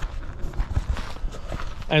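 Footsteps on grass with low rumbling handling noise from a hand-held camera being carried, irregular soft thuds and no clear rhythm.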